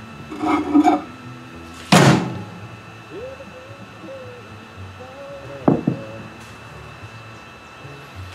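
Knocks from a glass measuring cup and silicone mold being handled on a bench while hot plastisol is poured: one sharp knock about two seconds in and a smaller one near six seconds. A faint wavering tone comes and goes between them.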